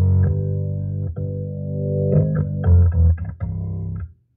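Hammond B3X organ played loud through a horn driver and woofers: sustained chords with a heavy bass, changing a few times, with a short break about a second in, cut off right at the end.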